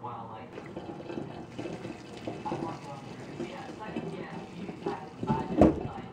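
Hot potato water being poured from a stainless steel pot into a metal kitchen sink, splashing. A loud thump near the end as a potato drops out into the sink.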